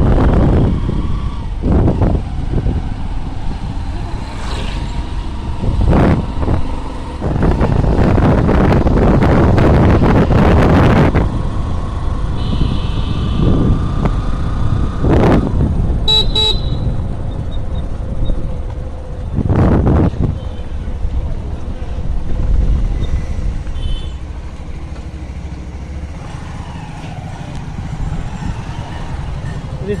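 Motorcycle riding along a road: wind buffeting the microphone in gusts over the engine and road rumble. A brief horn toot sounds around the middle.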